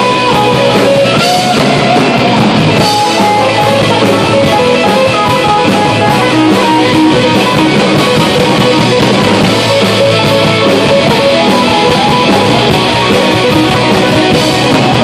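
Live rock band playing loud and steady: electric guitar over bass guitar and drum kit.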